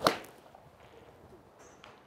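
A 7-iron full shot off a driving-range mat: one sharp crack of the clubhead striking the ball right at the start. The contact is ball first, then the mat.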